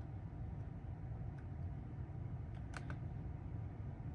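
Quiet car cabin with a low steady hum, and two faint quick clicks about three quarters of the way through.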